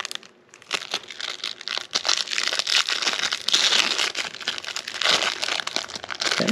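Thin clear plastic wrapping around Pokémon trading cards crinkling as fingers pull it off the cards. The dense crackle starts about a second in and runs on, louder from about two seconds.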